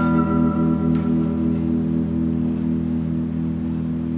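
Live band holding a sustained chord, electric guitars ringing out as one steady drone while its higher notes fade away over the first couple of seconds.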